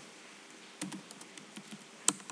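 Computer keyboard keystrokes, a scattered handful of faint clicks starting a little under a second in, as code is edited in a text editor.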